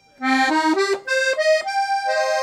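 Walther Teeny 48 two-reed piano accordion played on the treble keys in its musette register: a quick run of rising single notes, then a held note near the end.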